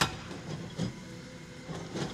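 Hyundai hydraulic excavator working demolition rubble, its engine running under a sharp knock at the start and then a few irregular clanks and knocks of its breaker attachment against concrete.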